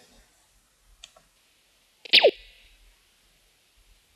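Laser-beam sound effect from a logo intro animation played back in a video editor's preview: one sharp sweep falling quickly from high to low pitch about two seconds in, with a short hiss trailing after it.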